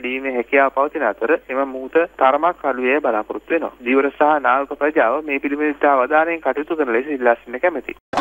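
A man speaking over a telephone line continuously, his voice thin and narrow with no high end.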